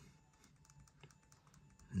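Faint, scattered clicks of computer keyboard keys, a few separate presses.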